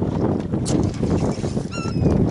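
Wind buffeting the microphone and choppy sea water slapping around a small fishing boat, a steady rushing noise. Near the end there is a brief high-pitched squeak.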